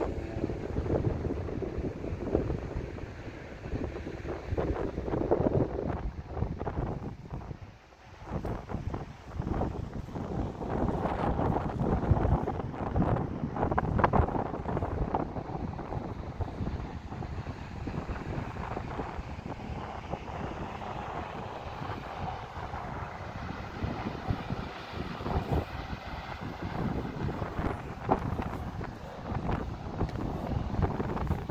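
Wind buffeting the microphone in uneven gusts, with a brief lull about eight seconds in.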